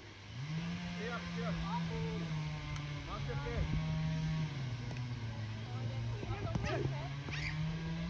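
Scattered shouts of players on a football pitch over a low, steady drone that holds one pitch, then jumps up or down to another several times.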